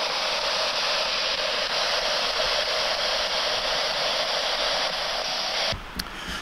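Spirit box radio giving out steady white-noise static through its small speaker, a constant hiss that is switched off abruptly near the end.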